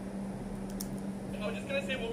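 A steady low hum, with a voice from a video playing through a laptop speaker coming in about one and a half seconds in.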